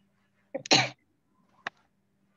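A person coughs once, a short sharp burst about half a second in. A single faint click follows about a second later.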